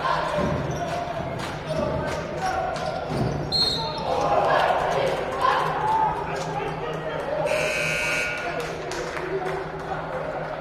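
Gymnasium crowd noise with voices and sneaker and ball sounds on a hardwood court. A short, high referee's whistle comes about three and a half seconds in, stopping play, and the scorer's table horn sounds for about a second near the eight-second mark.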